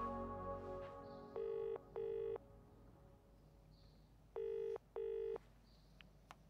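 British-style double-ring telephone ringing tone: two short rings close together, a pause of about two seconds, then two more, for a call that is going unanswered. Soft music fades out in the first second.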